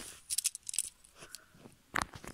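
Handling noise of a small plastic toy train turned over in the fingers: a cluster of small clicks and crackles in the first half second or so, fainter ticks after, and one sharp click near the end.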